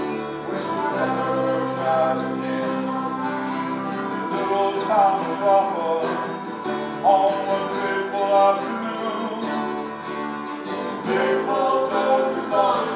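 A live acoustic folk band playing a song on accordion, acoustic guitars, mandolin and upright bass.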